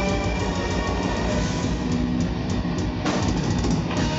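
Metal band playing live: electric guitar over a drum kit, with loud, dense music throughout.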